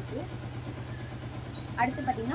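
A steady low hum, likely from a motor or electrical source.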